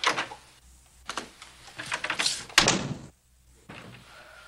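A wooden door opened and shut: a few lighter clicks and knocks, then the loudest knock about two and a half seconds in as it closes.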